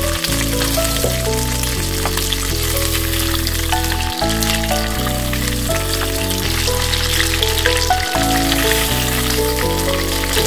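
Steady sizzle of crab rangoons deep-frying in a pot of hot oil, under background music whose notes change every second or so.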